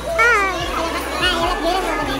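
Young people's voices calling out and chattering, with a loud high cry about a quarter second in, over music playing underneath.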